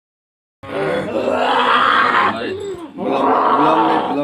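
A person undergoing ruqyah gives loud, drawn-out groaning cries: two long ones, the first starting about half a second in and the second just before the end.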